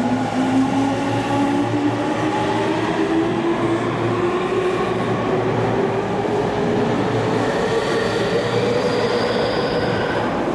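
Tokyu 5050 series electric train pulling out of a station, its VVVF inverter and traction motors giving a whine that climbs slowly and steadily in pitch as the train gathers speed, over a rumble of wheels on rail. A higher whine joins about eight seconds in.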